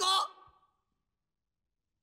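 The last syllable of a man's spoken line, trailing off within the first half second, then dead silence.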